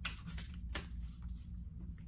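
Tarot cards being handled and leafed through in the hands: faint soft clicks and rustles a few times, over a low steady room hum.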